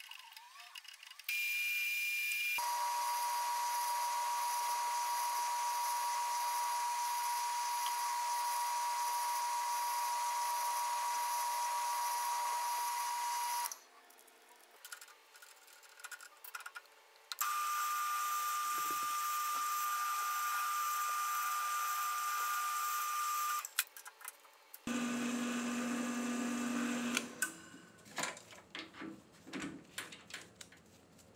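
Drill press running, drilling quarter-inch holes through metal bar stock clamped in a vise: three stretches of steady running with a high whine, each starting and stopping abruptly, the first long, the last short.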